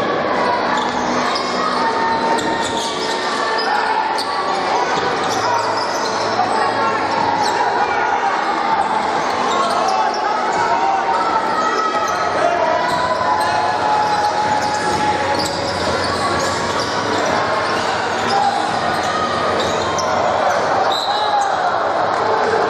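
Basketball being dribbled and bouncing on a hardwood court, short knocks scattered throughout, over the steady talk of a crowd echoing in a large gym.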